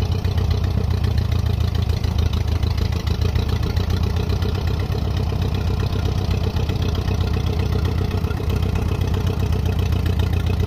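Allis-Chalmers WD tractor's four-cylinder gasoline engine running steadily at low speed while the tractor creeps forward, its carburettor in need of major work.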